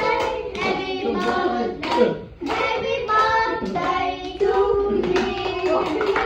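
Family singing a birthday song together, children's voices among them, with hands clapping along in a steady beat.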